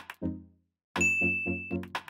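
Background music of short pitched notes about four a second, breaking off for a moment just before midway. A bright ding then rings out over the music for most of a second.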